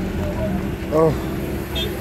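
Steady low engine hum of idling vehicles and road traffic, with a man's brief spoken "oh" over it.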